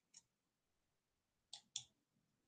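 Near silence with a few faint clicks: a tiny one just after the start and a quick pair close together near the end.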